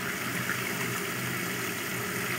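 Hot water running steadily from a kitchen tap into a granite sink, a continuous even rush of water.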